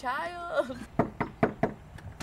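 A woman's short exclamation, then four quick knocks on a door about a second in, some four a second.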